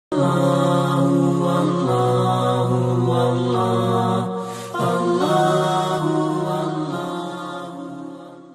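Channel intro music of long, held chanted notes that shift in pitch every second or two, with a short break about halfway through, fading out near the end.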